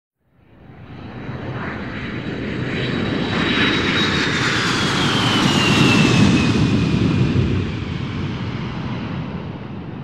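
Airplane flyby sound: engine noise swells up, is loudest about six seconds in and fades away toward the end, with a high whine that drops in pitch as it passes.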